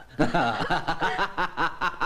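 A man laughing, a rapid, even run of 'ha-ha' pulses at about five a second that starts just after a brief pause.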